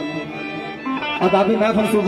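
Live folk music: a plucked string instrument plays a changing melody, busier in the second half.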